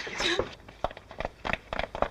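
Brief voice sounds, then a quick scatter of short knocks and scuffs as people move about a room.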